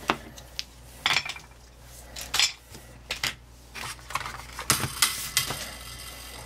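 Hard plastic toy RC car and its handheld remote being handled and set down on a table: a dozen or so irregular light clicks and clatters, thickest in the second half.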